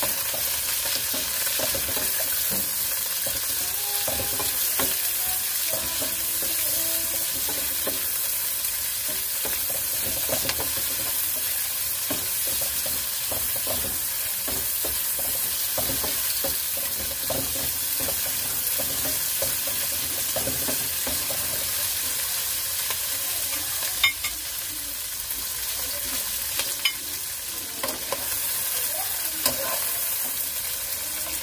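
Sliced bell peppers and onions sizzling as they fry in a nonstick pan, steadily stirred and tossed with a wooden spatula that scrapes and ticks against the pan. A few sharper clacks of the spatula come near the end.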